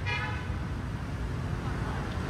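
A vehicle horn toots briefly at the start, over a steady low rumble of city traffic.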